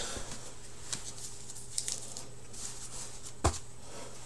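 Faint handling of trading cards and card packs on a tabletop: small rustles and light clicks, with one sharper tap about three and a half seconds in, over a low steady hum.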